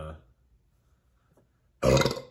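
A man's single short, sudden throat noise near the end, loud and throaty, of the kind that brings an 'excuse me', after a moment of near silence.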